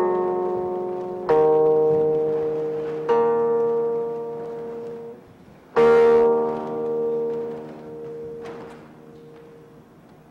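Silk-stringed guqin (Chinese seven-string zither) played solo: about four plucked notes, each ringing on and fading slowly, the last struck about six seconds in and dying away toward the end.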